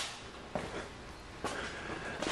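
Quiet workshop room tone with a few faint clicks, at the start, about half a second in, and again about a second and a half in.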